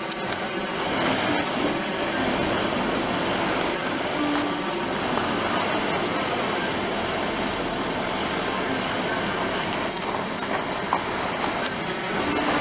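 Steady rumble of a Hyundai i20 driving along a street, heard from inside the car: tyre, engine and wind noise.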